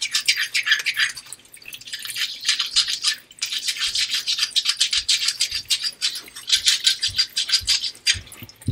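A Nakayama namito tomo nagura rubbed quickly back and forth along the chamfered edge of a wet, hard Nakayama kiita natural whetstone: a rapid, gritty scraping of stone on stone, with brief pauses about a second and a half and about three seconds in.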